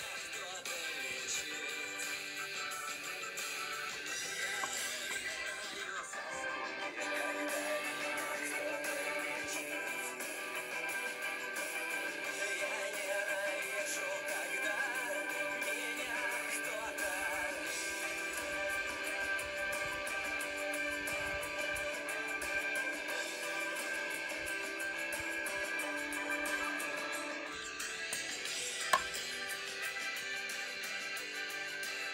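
Music with strummed guitar, played from a smartphone. About 28 seconds in the sound changes, and a sharp click follows.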